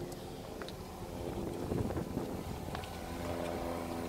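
A vehicle engine running with a steady low hum, its even hum growing stronger about three seconds in, with a few faint ticks.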